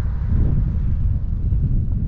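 Wind buffeting the microphone of a camera on a moving bicycle, a steady low rumble.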